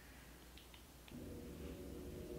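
Very quiet room tone with a couple of faint ticks, then a faint steady hum of a few held tones from about halfway.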